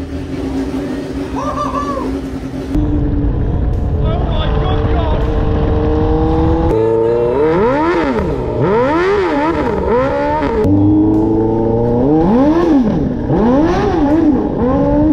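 Suzuki GSX-R600 inline-four motorcycle engine powering a kart: it runs at a steady idle at first, then climbs steadily in revs as the kart accelerates. After that its revs rise and fall several times in quick arcs.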